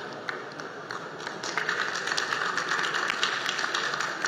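Audience applause, a scatter of claps at first that swells into fuller clapping about a second and a half in.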